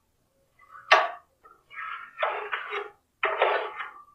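A sharp click, then a run of scratchy strokes: a line being marked along the edge of a clear plastic template on the steel base of a cut-off saw stand, with the plastic sliding and tapping on the metal.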